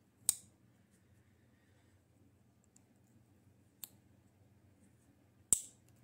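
Three sharp clicks over a quiet room: the single blade of an old Craftsman slip-joint pocket knife snapping on its backspring as it is worked, its pivot freshly oiled. The first and last clicks are loud; the one near the middle is weaker.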